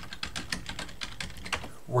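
Typing on a computer keyboard: a quick run of key clicks.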